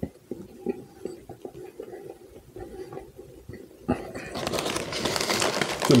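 Quiet chewing with wet mouth smacks and clicks, then about four seconds in a plastic chip bag crinkling steadily and growing louder as a hand reaches into it.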